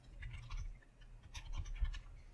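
Computer keyboard keystrokes as a short word is typed: a handful of soft, separate taps, with low thumps under them.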